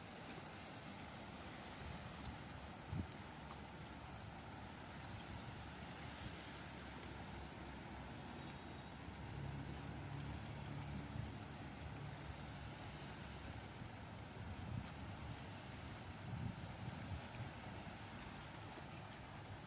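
Steady wind and sea water lapping against shoreline rocks, with a faint low hum for a few seconds past the middle.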